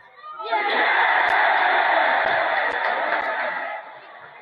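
Football crowd cheering and shouting a home side's equalising goal. The cheer rises about half a second in, holds loud, and dies away just before the end.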